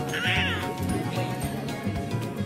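A boy's short, high-pitched, wavering scream lasting about half a second near the start, over background music with a steady beat.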